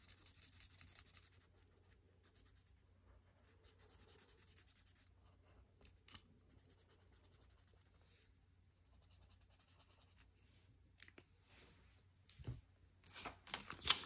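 Felt-tip marker scribbling on paper, colouring in a small shape in short stretches of strokes. A soft knock near the end.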